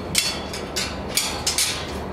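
Short metal clatters and rattles from a stainless steel cage being handled, about five in two seconds, over a steady low hum.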